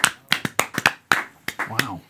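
A novelty comedy song's hiccup sounds: a rapid run of sharp, clicky vocal hiccups, about four a second, with a short voiced yelp near the end. The playback stops abruptly.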